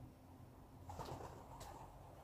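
Feral pigeon cooing once, faintly, starting about a second in, with a short tick near the end.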